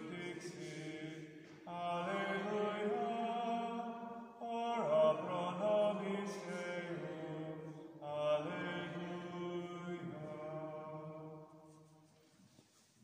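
Slow unaccompanied chant sung in long held notes, in phrases of about three seconds, fading away near the end.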